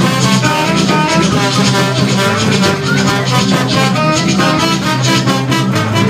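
Live band playing an up-tempo Latin-style number, trumpet and horns out front over guitar, bass and a steady beat.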